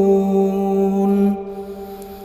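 A man reciting the Quran in a melodic chant, holding the long final vowel of a verse on one steady note. The note stops about one and a half seconds in and fades out.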